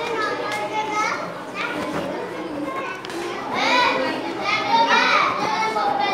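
Children's voices chattering and calling out, growing louder about halfway through.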